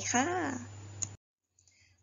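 A woman's voice finishes a sentence, then a single computer mouse click about a second in as the slide is advanced; right after, the audio cuts out abruptly to silence.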